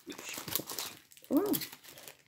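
Crinkling and rustling of a packet of paper craft pieces being handled, with fine crackles through the first second. A short exclaimed "Oh" follows about a second and a half in.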